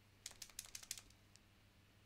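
Paint pen clicking as it is worked to get paint flowing to the nib: a quick run of sharp clicks over about three quarters of a second, then one more. The paint has come down the barrel but is not yet reaching the tip of a pen that has sat unused a while.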